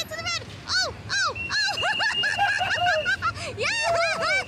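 Excited high-pitched cheering and whooping: a quick run of rising-and-falling yells, celebrating a win on a carnival rope-ladder climb. A steady high tone starts a little over a second in and keeps going under the yells.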